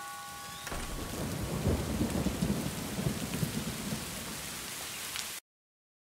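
Rain and thunder ambience with a low, uneven rumble, coming in about a second in as the last held music notes fade, then cutting off abruptly into silence near the end.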